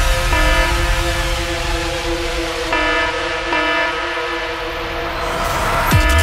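Electronic dance music breakdown: sustained synth chords with no drums or bass, shifting chord a few times, and a rising white-noise sweep building near the end before the drop.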